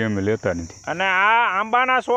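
Steady high-pitched chorus of insects buzzing, heard under a man talking.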